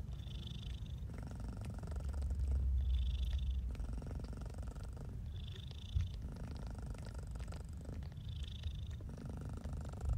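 Domestic cat purring steadily, the low rumble rising and falling in a regular cycle with each breath.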